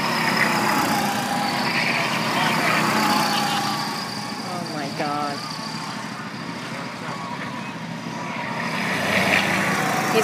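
Go-kart engines running as the karts circle the track. The sound is loudest as a kart passes close at the start, fades in the middle and builds again as another kart comes by near the end.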